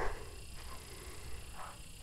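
Quiet room tone with a steady low hum, and a faint, short soft sound about a second and a half in.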